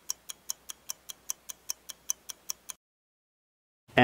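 Stopwatch ticking sound effect, a quick, even run of sharp ticks timing the breath-hold count, which stops abruptly about three-quarters of the way through, followed by a second of dead silence.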